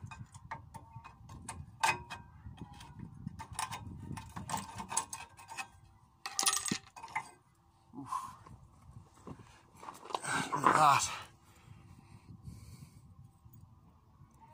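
Steel pry bar and a brake pad worn down to its steel backing plate clinking and scraping against the caliper carrier of a Ford Transit's front disc brake as the outer pad is levered out. Repeated light metallic clicks and knocks, with a louder scrape about three-quarters of the way through.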